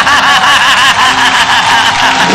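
A person laughing: a high-pitched snicker of quick, repeated pulses, loud throughout.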